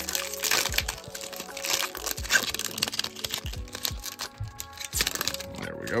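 Foil wrapper of a 2024 Bowman baseball card pack being torn open and crinkled by hand, a dense crackle that is thickest over the first three seconds and then thins out.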